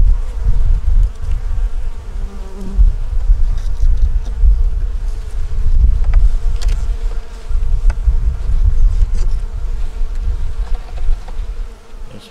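Honey bees buzzing around an opened hive, a steady hum, under a gusty low rumble of wind on the microphone.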